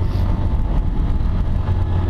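Motorcycle under way at road speed: a steady low rumble of engine and wind noise on the bike-mounted microphone.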